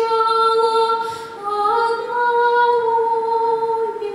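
A woman singing a Russian folk song solo and unaccompanied, in long held notes, with a short breath about a second in before her voice steps up in pitch.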